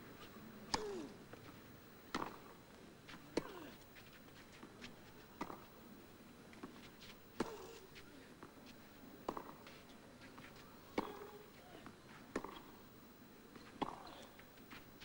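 Tennis ball struck back and forth by rackets in a long baseline rally on clay, a sharp hit every one and a half to two seconds, with fainter bounces and shoe scuffs between the hits.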